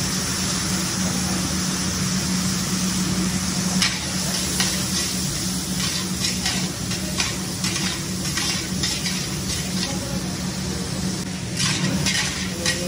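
Diced bell peppers and broccoli sizzling in a hot oiled wok while a metal ladle stirs them, scraping and clinking against the wok in short strokes that come thick from about four seconds in. A steady low hum runs underneath.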